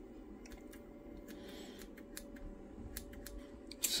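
Small scissors snipping frayed fibres off a jute string: a scatter of faint, quick snips.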